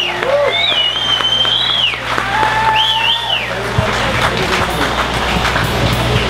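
Audience applauding and cheering, with several high whistles, while the band plays softly underneath on a steady low bass note.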